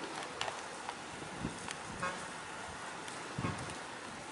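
A faint, low ship's horn sounding over steady outdoor background noise, with a few short clicks.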